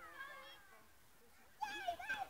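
Young children's high-pitched shouts and squeals, once at the start and again near the end.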